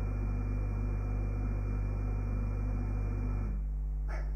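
Steady low hum with a faint high whine over it; part of the hum drops away about three and a half seconds in.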